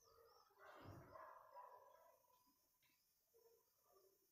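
Near silence: room tone, with a faint sound from about half a second to two seconds in.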